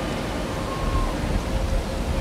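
Steady outdoor background noise: an even hiss over a fluctuating low rumble, with no distinct events.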